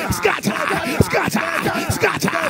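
A man's voice praying loudly and rapidly in tongues, a fast run of syllables, over background music with a beat.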